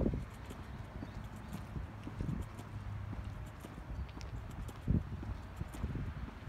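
Footsteps of a person walking on a path while filming with a phone, as irregular soft thumps with a stronger one about five seconds in, over a steady low rumble on the phone's microphone.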